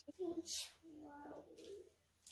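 Quiet wordless voice sounds: a short murmur and a brief hiss, then a held, wavering hum lasting about a second.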